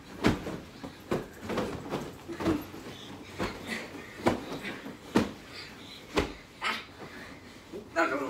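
Pillow fight on a bed: irregular soft thuds of pillows hitting and feet landing on the mattress, about once a second.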